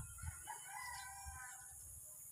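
A rooster crowing faintly: one long crow lasting about a second and a half.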